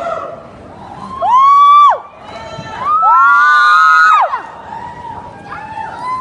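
Audience cheering with long, high held shouts close to the microphone: two loud calls of about a second each, the pitch rising at the start and dropping away at the end, with fainter calls around them.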